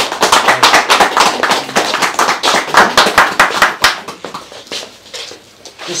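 A small group of people clapping: a burst of applause that thins out and stops about four and a half seconds in.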